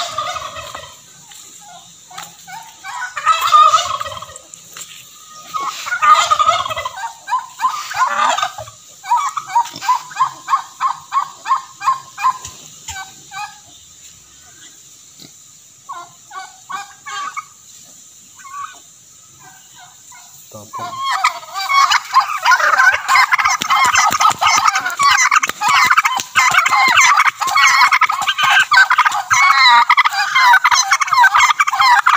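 Domestic turkeys calling: scattered calls and a quick run of repeated notes in the first half, then, about two-thirds of the way in, a dense, continuous chorus of gobbling from several toms at once.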